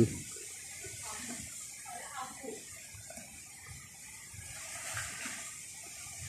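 Quiet outdoor background: a steady high hiss with faint, distant voices.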